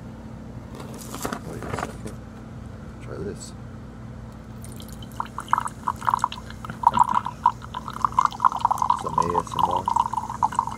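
Orange LaCroix sparkling water poured from a can into a glass measuring cup, the splashing pour starting about five seconds in.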